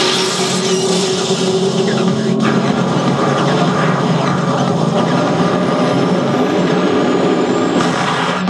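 Pachinko machine playing a loud, steady rumbling sound effect in place of its fever-mode music, with a faint rising whine near the end.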